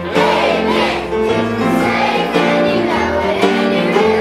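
A group of children singing together into microphones, over an instrumental accompaniment with a sustained bass line that steps from note to note.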